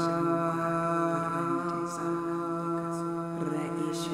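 A woman's voice holding one long, steady chanted tone, light-language toning, which shifts slightly in pitch about three and a half seconds in, over soft background music.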